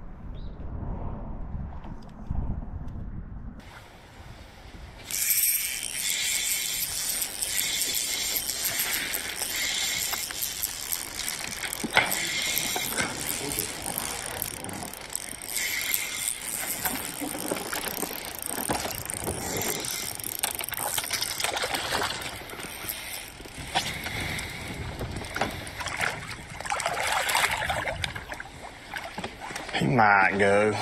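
A fishing reel being cranked fast, its drag and gears ratcheting, while a bass is fought on the line; a low rumble fills the first few seconds before the reel sound starts.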